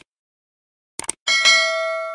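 Subscribe-animation sound effect: short mouse clicks, then about a second in a bright notification-bell ding that rings on with several overtones and slowly fades away.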